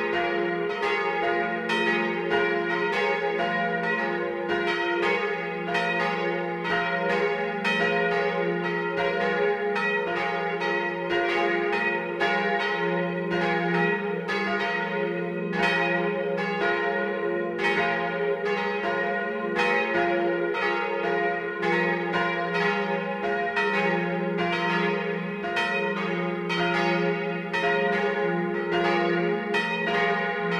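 Several church bells pealing together, a steady, unbroken stream of strikes with their tones ringing over one another.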